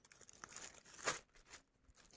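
Faint crinkling of a thin plastic bag under hands handling marinated mackerel fillets, with one louder rustle about a second in.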